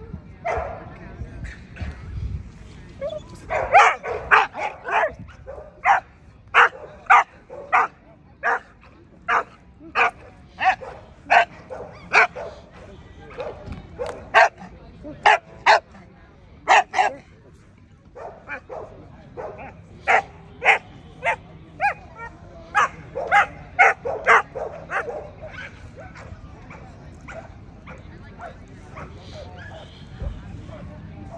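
A dog barking over and over in short sharp barks, about two a second. The barking comes in runs with a brief pause partway through, then trails off fainter near the end.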